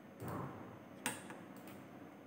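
A few light clicks of a computer mouse, the sharpest about a second in, as a programming error dialog is dismissed and flashing is restarted. There is a short soft sound near the start.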